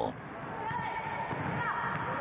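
Basketball practice in a gym: a ball bouncing and sneakers giving short squeaks on the court, over a steady hum of court noise.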